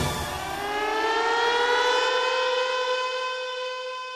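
A siren-like electronic tone with many overtones rises in pitch over about two seconds, then holds steady and slowly fades, as an ident sound effect between the opening music and an advert.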